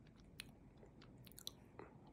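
Faint chewing on a bite of toasted sandwich, with a few soft clicks of mouth and teeth.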